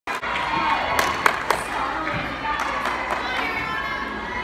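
Crowd of spectators cheering and chattering, with three sharp knocks about a second in.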